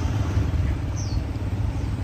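Street traffic: a motor scooter's engine running as it passes close by and pulls away, over a steady low rumble. A short, high, falling chirp sounds about a second in.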